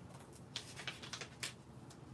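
Faint, scattered ticks and rustles of cardstock and paper being handled and pressed on a craft table, a few short ones about half a second apart.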